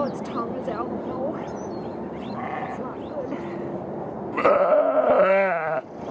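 Ewe in a difficult first labour bleating loudly, one long quavering cry of distress about four and a half seconds in.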